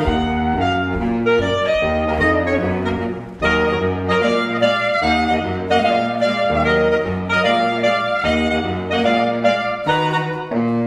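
Saxophone quintet playing live: several saxophones in harmony, a quick run of short notes over a low bass line, with a brief break about three seconds in.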